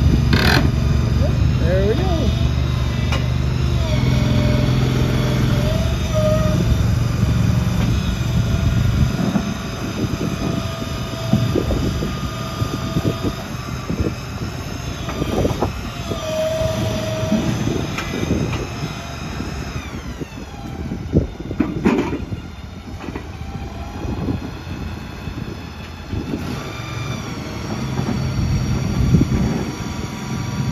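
Engine of a shed mover running as it pushes a portable building, with a heavy low hum for the first several seconds, then lighter running with its pitch shifting and gliding about twenty seconds in, and occasional sharp knocks.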